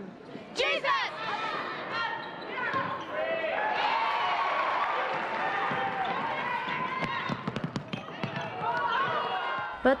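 A basketball team shouting together in unison as their huddle breaks, about a second in, followed by gymnasium crowd noise with voices and cheering. A basketball bounces on the hardwood court several times about two-thirds of the way through.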